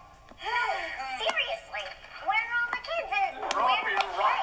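Character voices from a children's TV show playing through a tablet's speaker, with a couple of sharp clicks, the first about a second in and the second near the end.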